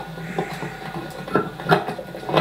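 A few sharp plastic clicks and rattles as a hand works the turning latch of an airliner seat-back tray table, the loudest click near the end.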